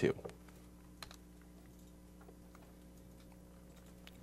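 A few faint computer keyboard clicks, one a little louder about a second in, over a steady low hum.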